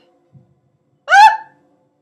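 A woman's short, very loud, high-pitched squeal of shock, rising in pitch, about a second in.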